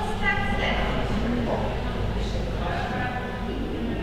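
Indistinct background voices over a steady low hum.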